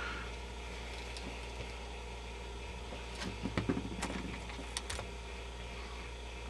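Steady low hum with a few small, sharp clicks and handling noises in the middle stretch as the emptied electrolytic capacitor can is worked in a rag and its leads are snipped off with cutters.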